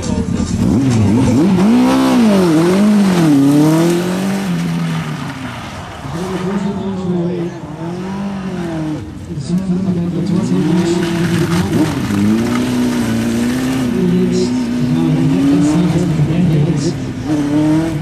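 A lightweight open-wheeled Seven-style sports car's engine revving hard up and down, over and over, as it is driven through a tight cone slalom. Its pitch climbs and falls with each burst of throttle and lift between the gates.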